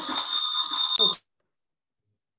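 Hissing noise with steady high whistling tones coming through a video-call audio feed, cut off suddenly a little after a second in.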